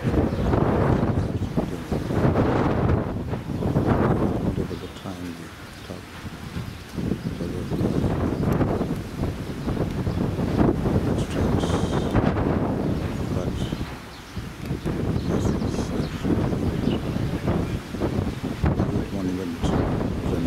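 Wind buffeting the camera microphone in gusts, a rough low rumble that swells and dies away every few seconds.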